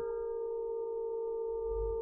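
A steady electronic hum made of several held tones, the lowest the strongest, unchanging in pitch.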